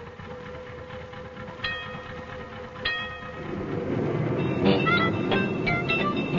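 A tram running with a steady hum, and its bell ringing twice, about a second apart. About halfway through, plucked-string music starts and takes over.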